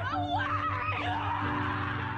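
A young woman sobbing and crying out in distress, her voice wavering up and down, over background music with steady held tones.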